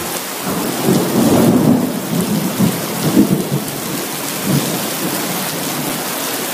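Heavy rain pouring down, with a low rumble of thunder that swells about a second in and again around three seconds.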